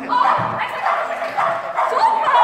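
A dog barking repeatedly in short, high-pitched barks.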